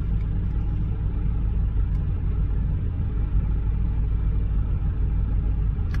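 Steady low rumble of an idling vehicle engine, heard from inside the cab.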